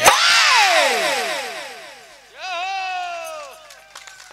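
Through the stage sound system: a sudden loud burst that slides down in pitch over about two seconds. Then, about halfway in, a held, slightly wavering vocal call lasting about a second, in a short break in the music.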